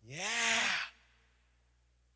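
A man's breathy, drawn-out "yeah", rising and then falling in pitch and lasting just under a second.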